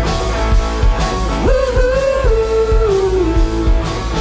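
Live rock band playing: drum kit keeping a steady beat under electric guitars, bass and keyboards. A lead line rises to a held note about a second and a half in and slides down near the end.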